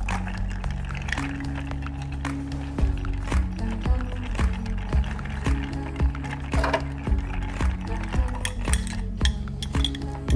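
Ice clinking against a glass mixing glass as a bar spoon stirs a gin and lime cordial gimlet, stirring it down to chill and dilute it; the clinks come in a quick irregular run. Background music with long held low notes runs underneath.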